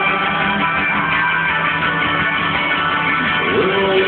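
Rock band playing live on stage: electric guitar and drums, loud and continuous.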